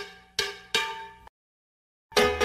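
Short logo jingle of struck, ringing, bell-like notes: one note is already dying away, then two more strikes come about a third of a second apart, and the sound cuts off suddenly just past a second in.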